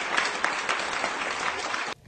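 Audience applauding: a dense, even patter of many hands clapping that cuts off suddenly near the end.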